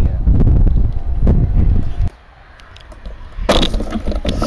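Strong wind buffeting the microphone: a loud, low rumble with a few knocks for about two seconds that cuts off suddenly. It is followed by a quieter lull, and a loud gusty rush returns near the end.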